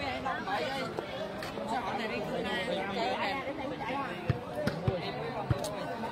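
Crowd chatter and voices, with a few dull thumps near the end, about half a second apart, of a volleyball being bounced on the hard dirt court.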